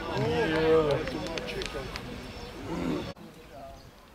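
Voices shouting across a football pitch: one long held shout in the first second, then shorter calls. The sound cuts off suddenly about three seconds in, leaving only faint background.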